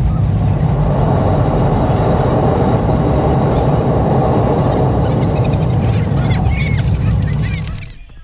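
Jet airliner on its landing roll, heard from inside the cabin: a loud, steady roar of the engines and the wheels on the runway, fading out near the end.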